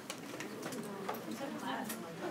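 Quiet classroom background: faint voices murmuring at a distance, with a few small clicks and taps.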